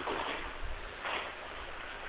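Steady hiss of a telephone line, heard through the narrow band of a phone call, with two soft swells of noise and no speech.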